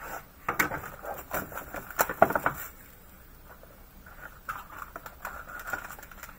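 Trading-card packaging being handled: quick crinkling and clicking of a foil pack wrapper and its box for the first couple of seconds, a brief lull, then more foil crinkling near the end.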